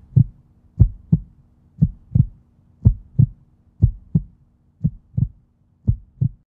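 Heartbeat sound effect: slow lub-dub double thumps, about one beat a second, over a faint steady low hum.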